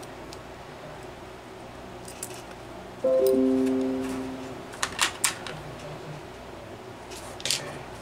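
A short plucked-string chord of three notes struck one after another rings out about three seconds in and fades over about a second. Three sharp clicks follow about two seconds later, then one more near the end, as small metal engine parts and a hex key are handled.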